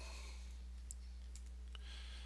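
A few faint computer mouse clicks over a steady low electrical hum.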